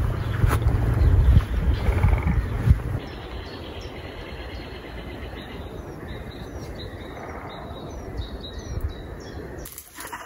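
Small birds chirping outdoors: a few short, high calls that slide downward, heard over a quiet open-air background. For the first three seconds a loud low rumble of wind or handling noise on the microphone covers them.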